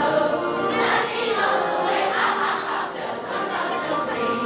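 Children's choir singing together over a sustained instrumental accompaniment.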